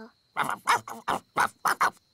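Gaston, the cartoon ladybird who talks like a dog, making a quick run of short dog-like yaps.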